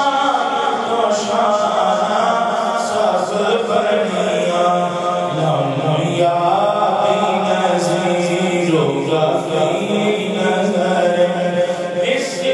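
A man's solo voice chanting devotional verses into a microphone, in long drawn-out notes that glide and bend from one pitch to the next.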